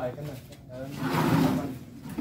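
A voice speaking, then a loud, rough noise lasting most of a second about a second in.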